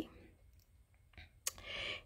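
Quiet room tone, then a single sharp click about one and a half seconds in, followed by a soft breathy hiss.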